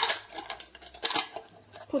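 Glass jar being handled before it is capped: a few light, sharp clicks and taps, spaced unevenly.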